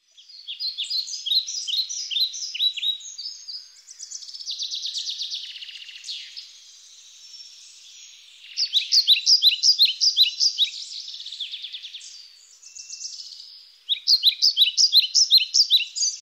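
Songbird singing in bouts of quick, repeated, downward-slurred chirps, with fast trills between the bouts and short pauses.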